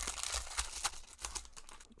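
Foil trading-card pack wrapper being torn open and crinkled by hand, a dense crackle of small clicks that dies down near the end.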